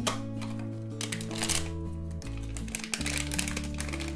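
A foil blind-box bag crinkling and crackling in the hands as it is torn open, over background music of held notes.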